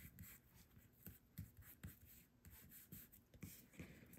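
Near silence with a few faint, soft taps and rubbing as fingers press and smooth a small piece of paper onto a fabric tag.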